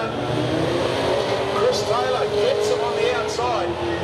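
Two dirt-track speedway saloon cars racing side by side with their engines held hard down at a steady high note that sinks slightly as they run down the straight.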